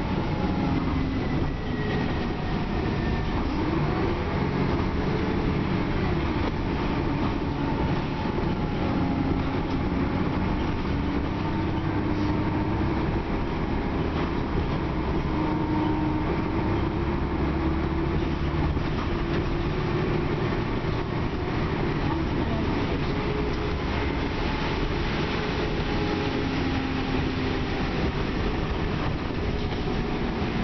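Inside a 2001 Dennis Trident double-decker bus on the move: a steady engine and road rumble, with a faint whine that drifts up and down in pitch as the bus changes speed.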